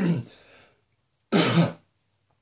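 A man clearing his throat: the tail of one throat-clear right at the start, then a second short rasping throat-clear about a second and a half in.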